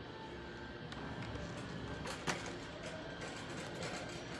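Faint background music over the steady hum of a large store, with a few light clicks, the loudest just past two seconds in.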